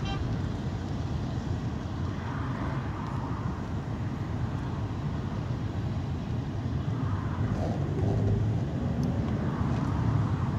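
Steady engine and road rumble of a moving local bus heard from inside the cabin, low and continuous, swelling slightly toward the end as traffic passes alongside.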